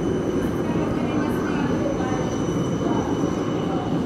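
Red electric city trams running along street-embedded rails: a steady running noise with background voices.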